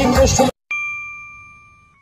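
Background music cuts off about a quarter of the way in, and then a single bright bell ding sounds and rings out, fading away. It is a notification-bell sound effect for a Subscribe end-screen animation.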